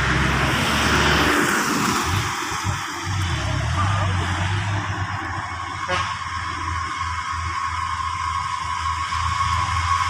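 Loaded Mitsubishi Fuso dump truck's diesel engine running with a low, steady rumble as the truck pulls slowly away.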